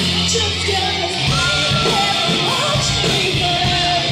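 Live rock band playing, with drums, guitar and keyboard. From about a second in, a voice sings long held notes over the band.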